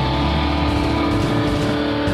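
Live rock band holding a sustained closing chord on distorted electric guitars, with drums hitting underneath, as a song ends.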